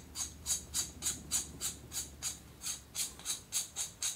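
Castle nut being spun by hand onto the threads of an AR-15 receiver extension tube: a light, even metallic clicking, about four clicks a second.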